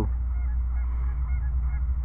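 Geese honking faintly several times over a steady low rumble.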